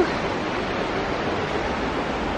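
Steady rushing outdoor background noise, even in level throughout, with no distinct events.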